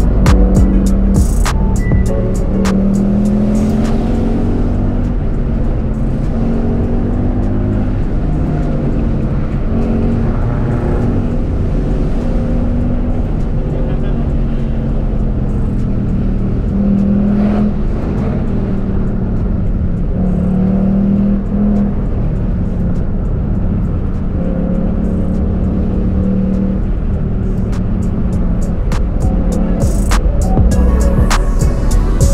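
A car engine heard from inside a Ford Mustang's cabin, its pitch rising and falling as it speeds up and lets off. Music with a beat plays over it at the start and again near the end.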